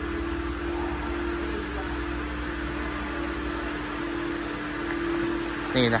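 A steady mechanical hum with one constant mid-pitched tone over a low rumble, running without change.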